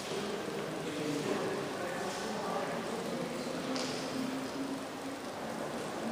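Indistinct murmur of other people talking at a distance, over a steady background hiss of room noise.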